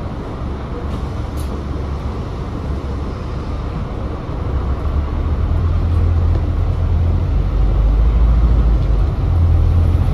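Volvo B5TL double-decker bus's four-cylinder diesel engine running with a deep rumble, heard from inside on the upper deck. The rumble grows louder from about halfway through as the bus picks up speed.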